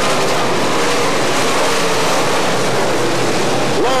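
A pack of dirt-track Sportsman race cars racing together on the track: a loud, steady wash of engine noise with wavering engine tones running through it.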